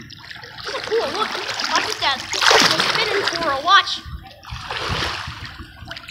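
Water splashing in a swimming pool, loudest from about two and a half to three and a half seconds in, with children's voices over it.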